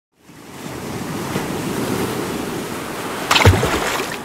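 Logo intro sound effect: a whooshing noise like wind or surf fades in over the first half second and holds, then a sharp hit with a low thump lands about three and a half seconds in.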